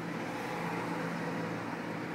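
A steady mechanical hum with a couple of held low tones.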